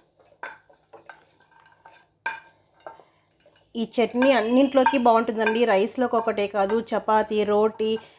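Fried tomato and peanut mixture being spooned into a stainless-steel mixer-grinder jar: a few light scrapes and short metallic clinks of a spoon against the steel. From about four seconds in, a woman's voice takes over and is the loudest sound.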